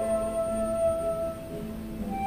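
Background music: a flute holds one long, steady note that fades out near the end, over a soft low accompaniment.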